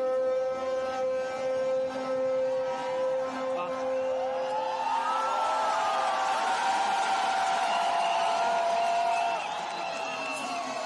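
A single long note held steady through a loudspeaker fades out about five seconds in. From about four seconds in, a large stadium crowd cheers and whoops, with many voices rising and falling in pitch.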